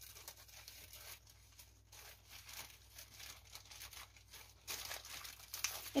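Thin grey plastic postal mailer bags being cut open with scissors and handled: faint, irregular crinkling and rasping of the plastic, a little louder near the end.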